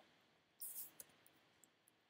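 Near silence: room tone with a faint brief hiss just over half a second in and a single faint click about a second in, as from working a computer.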